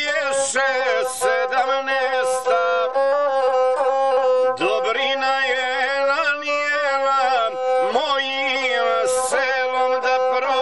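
Gusle, the single-string Balkan fiddle, bowed in an instrumental passage: a wavering, heavily ornamented melody over a steady held note.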